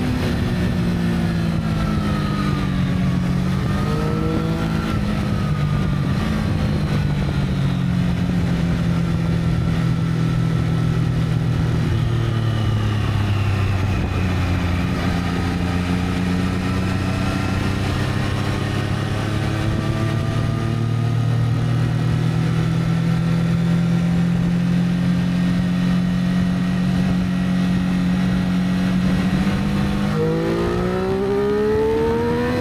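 Triumph Street Triple 765 Moto2 Edition's three-cylinder engine heard from the rider's seat, unsilenced 'raw' sound, while riding: revs fall over the first few seconds with a short blip about four seconds in, settle to a low steady drone through the middle, then climb slowly near the end.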